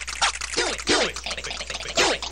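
Electronic music from a Fairlight CMI: a busy run of short synthesized sounds, each sweeping quickly downward in pitch, several a second.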